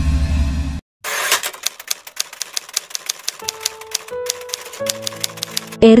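Typewriter typing sound effect: rapid, irregular key clicks, heard as a headline types out on screen. It starts after a short low hit and a brief gap in the first second, and soft background music tones come in under the clicks in the second half.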